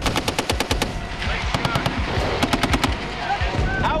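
Machine-gun fire in three rapid bursts of about eight or nine shots a second, with voices calling out between the bursts.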